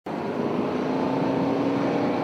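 Boeing KC-135 Stratotanker's jet engines running on the ground: a loud, steady rush with a steady hum and whine held through it.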